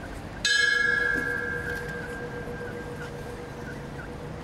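A bell struck once about half a second in, ringing on with a long fading tone; it is tolled after a victim's name is read out.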